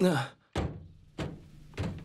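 A short voice sound falling in pitch, then two dull thunks about two thirds of a second apart: cartoon impact sound effects.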